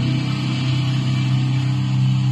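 Distorted electric guitar's final chord ringing out, held steady through the amplifier at a low pitch after the picking has stopped.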